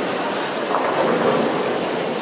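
Steady rumble of a busy bowling alley: balls rolling down the lanes and the lane machinery running, with no single crash of pins standing out.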